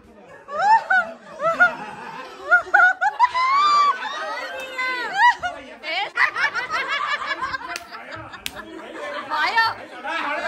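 A small group of adults laughing and talking excitedly over one another, with rising and falling high-pitched voices.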